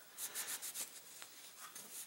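Cloth rag rubbing over a small metal gun part in quick, faint strokes, strongest in the first second and then fading.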